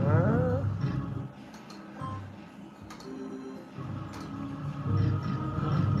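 Novoline Book of Ra slot machine playing a free spin: electronic game tones and music as the reels run, with a few sharp clicks as they stop.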